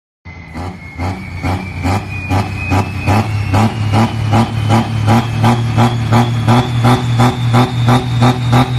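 Diesel farm tractor under full load in a tractor pull, the engine running with a deep steady drone and a regular pulsing about three times a second. A high whistle climbs slowly in pitch over the whole stretch.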